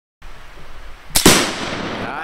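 A gunshot, then a split second later the louder boom of a Tannerite exploding target detonating, fading away slowly.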